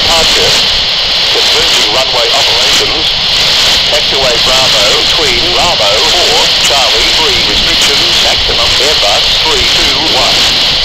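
Brisbane ATIS (automatic terminal information service) broadcast on 125.5 MHz coming from a handheld scanner's small speaker: a voice reading the airport information, indistinct under steady radio hiss.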